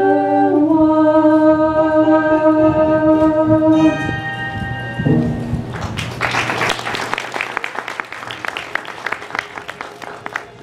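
The closing chord of a stage-musical song, held for about four seconds, then a short final chord. Audience applause follows for the last four seconds.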